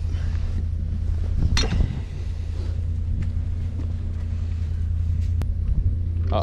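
Steady low rumble of a tow truck's engine running, with a brief sharper sound about one and a half seconds in.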